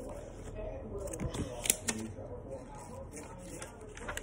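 Rustling of a phone being handled and moved, with a few sharp clicks about a second and a half in, and a faint voice in the background.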